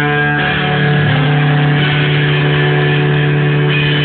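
Rock band playing an instrumental passage led by electric guitar over a long held low note, with no singing.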